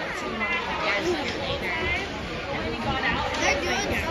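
Background chatter of several spectators' voices overlapping in an ice rink, with no single voice clear.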